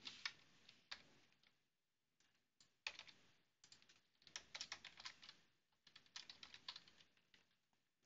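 Faint computer keyboard typing: a few single keystrokes, then short runs of keystrokes with pauses between them from about three seconds in.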